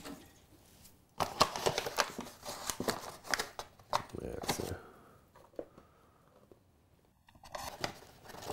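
Paper flour bag crinkling and rustling in irregular bursts as it is handled and a hand reaches inside it. The sound dies down about five seconds in.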